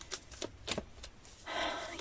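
Soft clicks and light handling noise, a few short ticks in the first second, then a breath drawn in near the end.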